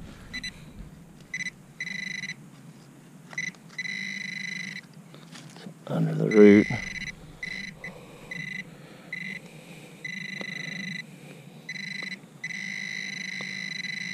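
Handheld metal-detecting pinpointer sounding its steady high alert tone in on-and-off stretches, from a fraction of a second to about two seconds long, as its probe is worked through the dug soil, signalling metal close by. A brief voice sounds about six seconds in.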